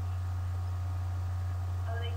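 A steady low electrical hum with faint constant higher tones above it, unchanging throughout; a hum in the poor-quality webcam stream audio.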